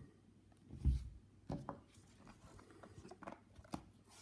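Handling noise of a hardcover notebook and pen: a soft low thump about a second in, then a few light clicks and taps as the book is turned and its cover handled.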